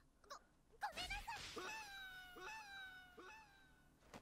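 An anime character's long, high-pitched drawn-out wail, sliding slowly down in pitch with a few brief wobbles, heard faintly.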